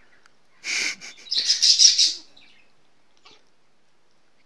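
A kitten hissing twice at a dog nosing at it, a short breathy hiss and then a longer, sharper one, the defensive warning of a cornered cat.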